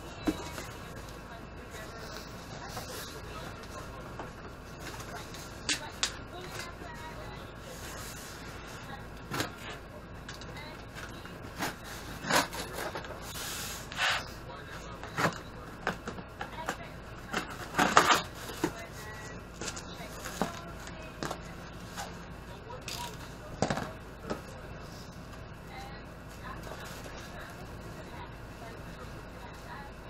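Cardboard shipping box being opened by hand, with styrofoam packing inside: scattered sharp rustles, scrapes and knocks of flaps and packing over a steady background hum. The loudest handling noise comes about two-thirds of the way in.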